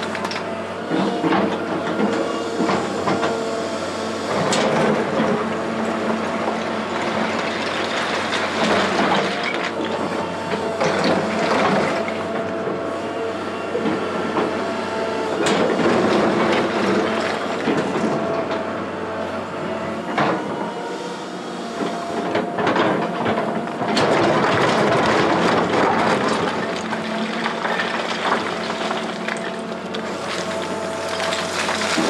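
Link-Belt 2800 tracked excavator working a pile of broken rock: its diesel engine runs steadily under hydraulic load while rock and steel clatter and knock irregularly, louder in several stretches as the bucket digs and dumps.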